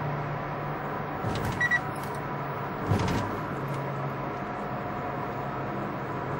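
Steady hum of a car's cabin while driving. About a second and a half in come a few short clicks and a brief high beep. A single louder knock follows about three seconds in.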